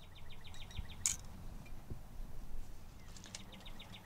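A songbird trilling twice, each trill a rapid run of short, evenly spaced chirps at about ten a second. There is one short sharp sound about a second in.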